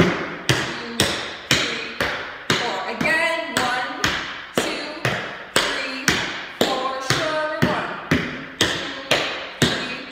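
Tap shoes striking a hardwood floor in an even rhythm, about two taps a second, each with a short ring in the room, as a dancer steps through jazz tap touch-togethers and sugars.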